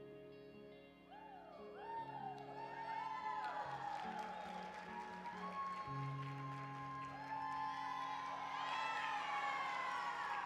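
The song's final sustained guitar chords ringing out over the hall's sound system, while an audience starts whooping and cheering about a second in, the cheers building toward the end as the routine finishes.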